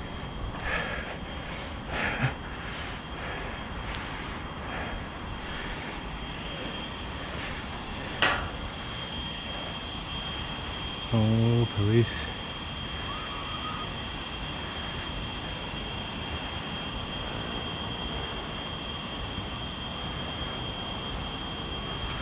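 Metal clanks and knocks of a climber moving through a steel hatch on a radio tower: several in the first few seconds and one sharp one about eight seconds in. Under them runs a steady rumbling noise with a thin high whine. A short vocal sound comes around eleven seconds in.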